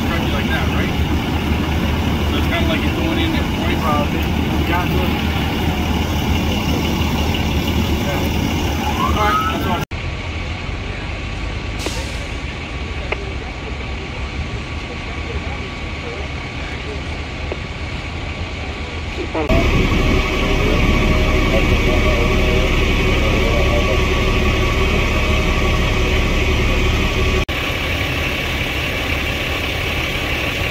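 Fire engines' diesel engines idling, a steady low rumble, with faint voices in the background. The sound changes abruptly three times, getting quieter about a third of the way in and louder again past the middle.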